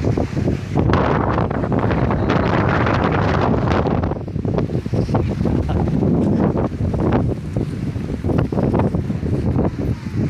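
Wind blowing across a phone's microphone in gusts, a loud low rush that is strongest from about one to four seconds in.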